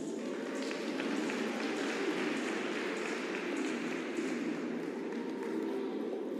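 Arena audience applauding as the program music ends, a dense patter of clapping that swells right at the start and eases off near the end.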